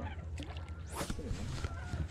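Hooked striped bass thrashing at the water's surface beside the boat, with one sharper splash about a second in, over a steady low wind rumble on the microphone.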